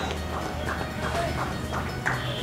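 Running footsteps of cricket batsmen taking a run between the wickets: a quick, uneven series of light steps, about four a second.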